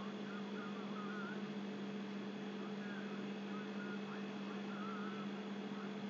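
Steady low electrical hum over a background hiss. Faint, short, wavering chirps come and go throughout.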